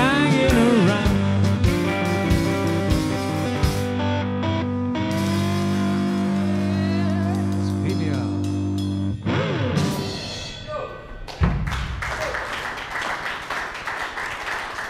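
A live blues band with two electric guitars and drums plays the closing bars of a song: a last sung line, then a held final chord that stops abruptly about nine seconds in. Audience applause follows in the last few seconds.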